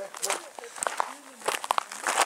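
Footsteps crunching on a loose gravel path, a few irregular steps with the clearest ones near the end.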